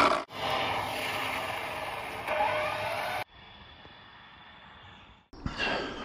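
Dual-motor Arrma speed-run RC car under power: a steady electric whine and rush with a high thin whine above it, which rises about two seconds in. It cuts off abruptly about three seconds in, leaving a faint hiss, then a single knock near the end.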